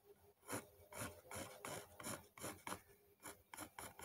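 A white pencil scratching across a dark drawing surface in short, quick sketching strokes, about three a second.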